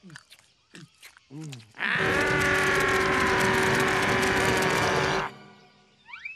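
A cartoon character's loud, rough yell lasting about three seconds and slowly dropping in pitch, after a few short sliding squeaks.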